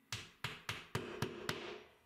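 Curved-claw hammer tapping a wall anchor into a drilled hole in the wall: six quick, light taps, about three a second, each with a short ring, stopping about a second and a half in.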